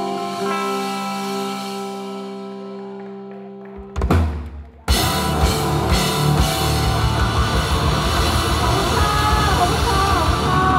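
Live rock band: a held chord rings and slowly fades for about four seconds, then a loud drum hit, a brief stop, and the full band comes back in with a Pearl drum kit and electric guitar, loud and dense, from about five seconds in.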